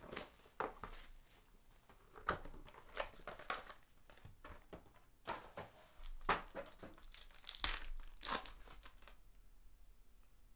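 Foil wrapper of a trading-card pack being crinkled and torn open by hand, in scattered irregular crackles that are loudest a little past halfway.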